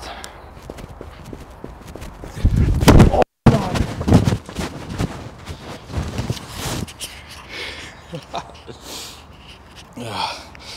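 Clip-on microphone rubbing and knocking against clothing, building to a loud rumble about two and a half seconds in, then cutting out dead for a moment as its cable is pulled out. Faint scattered footsteps and rustling follow.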